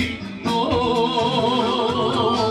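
Music with singing: a wavering, ornamented melody line with heavy vibrato over a low accompaniment, dipping briefly just after the start.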